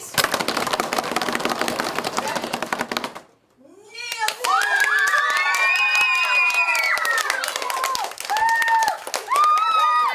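A drum roll of many hands rapidly drumming on classroom desks for about three seconds, stopping abruptly. After a brief hush, a group of children cheers and shouts in high voices, with some clapping.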